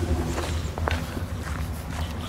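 Footsteps on snow-covered ground: a few separate steps.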